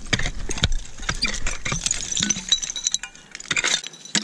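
A rake being pulled through dry, stony dump soil, with many quick clicks and scrapes and high glassy clinks as bits of glass, bottles and stones knock together; it eases off briefly near the end.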